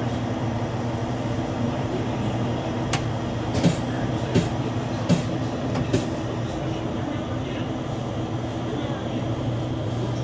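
Steady low machine hum of convenience-store equipment, with about five short sharp knocks or clicks a little under a second apart near the middle.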